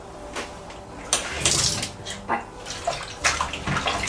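Water splashing and sloshing in a bowl as salted napa cabbage leaves are rinsed by hand, to wash out excess salt. The splashing starts about a second in and comes in uneven bursts.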